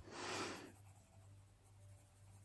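Faber-Castell Polychromos coloured pencil rubbing on paper as skin tones are shaded in, faint and scratchy. A brief, louder rush of noise comes in the first half second.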